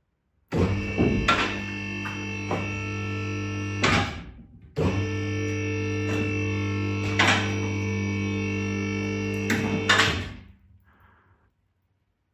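Vehicle lift's electric pump motor running with a steady, even drone to raise the car body off its battery pack. It runs in two stretches with a brief stop about four seconds in and winds down near the end, with a few clunks along the way.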